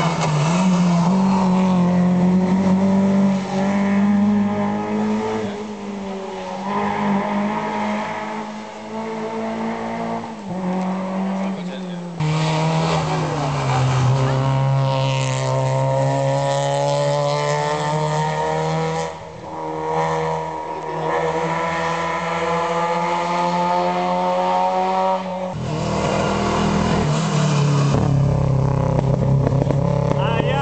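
Rally car engine at high revs, accelerating hard through a bend and changing gear, its note climbing and dropping at each shift, with several abrupt jumps in the sound.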